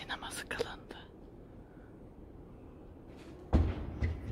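Brief soft whispering and a few clicks in the first second, then a single heavy, low thump about three and a half seconds in, the loudest sound, over the quiet tone of a large hall.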